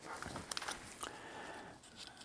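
Faint rustling with a few light clicks from a plastic hook packet being handled, with sharp ticks about half a second and one second in.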